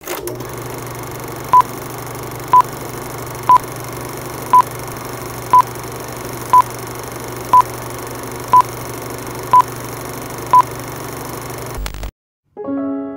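Film-leader countdown sound effect: ten short beeps at one pitch, about one a second, over a steady hum and hiss. It all cuts off just before the end.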